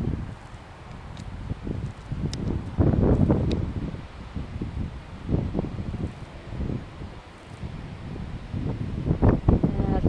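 Wind buffeting the microphone in uneven gusts, a low rumbling rush that swells and fades several times.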